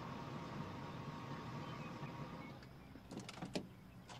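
A parked car's engine idling, then shut off about two and a half seconds in. A car door is opened with a few sharp clicks about a second later.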